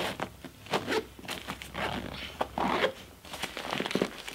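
Zipper on the front pouch of a SOG Bandit sling pack being pulled open in several short, uneven drags.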